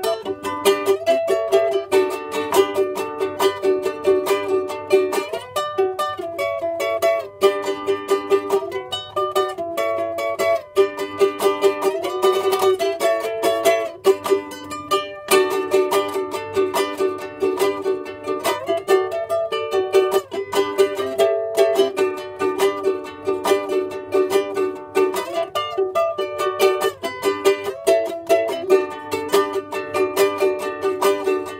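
LEHO ukulele played solo, chords strummed in a steady rhythm with a picked melody line running over them.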